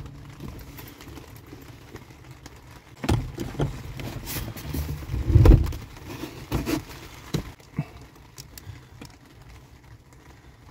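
Hands handling a brake light switch and working it onto the brake pedal bracket under the dashboard: scattered knocks, clunks and rattles, loudest as a dull thump about five and a half seconds in.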